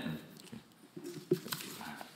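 Faint room noises after a spoken "Amen": soft rustling and shuffling with two light knocks a little past the middle.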